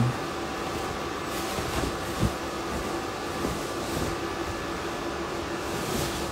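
Steady fan hum in a room, with a few faint steady tones in it, and a faint short knock about two seconds in.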